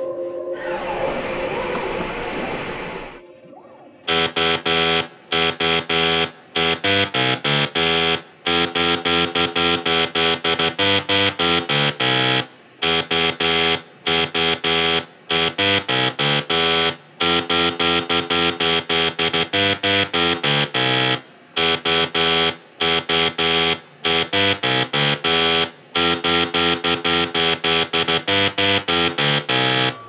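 A short noisy swell, then from about four seconds in a rapid melody of buzzy electronic tones. The notes are short, step up and down in pitch, and are broken by brief pauses.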